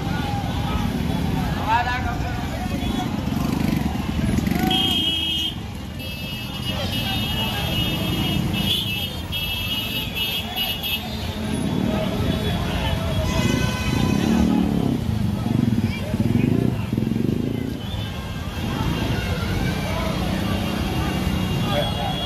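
Street procession ambience: many voices over the running of motorcycle engines, with vehicle horns sounding for several seconds around the middle.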